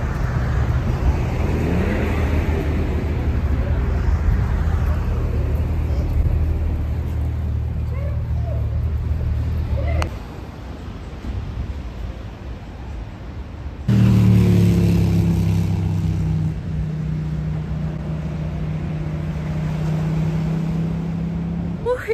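Street traffic: steady engine hum of road vehicles that cuts off suddenly about ten seconds in. A quieter spell follows, then a steady engine hum comes in abruptly about four seconds later.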